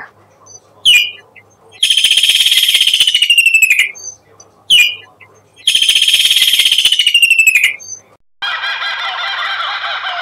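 Kingfisher calling: a short, high call, then a long, shrill trill of rapid notes sliding down in pitch, then the same pattern again. Near the end a different, denser bird sound starts.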